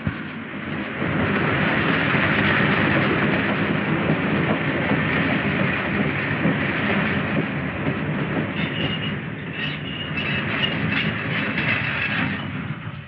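A train running with a steady rumble and clatter, with a high, broken squeal coming in from about eight seconds in as it pulls in.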